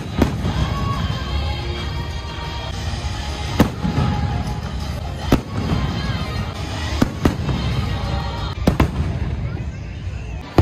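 Fireworks show: aerial shells bursting in several sharp bangs, spaced a second or two apart, over a dense low rumble and the show's music.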